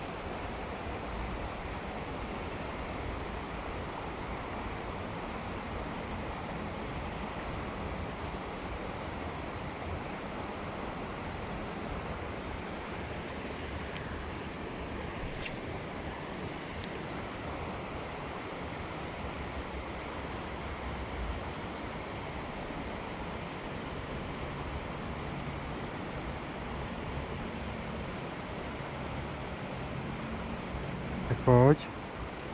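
Steady rushing of a small river's current flowing over stones, with a few faint clicks about halfway through.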